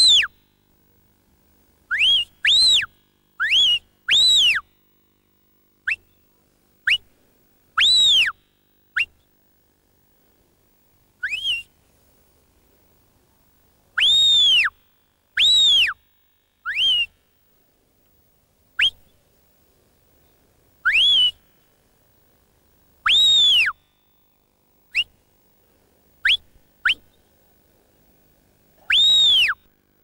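A sheepdog handler's whistle commands to a working sheepdog: about twenty separate sharp notes with gaps between them, some quick upward flicks and others longer notes that rise and fall.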